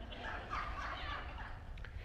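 Faint laughter from the congregation, a spread of several voices reacting to a joke.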